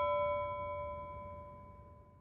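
The ringing tail of a single struck bell-like chime in a closing music sting, several ringing tones slowly fading away over a faint low hum.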